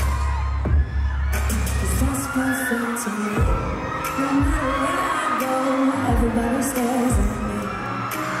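Live pop music over a concert PA, with a woman singing into a microphone. A low, sustained bass stops about two seconds in, and after that a few deep drum thumps fall under the voice.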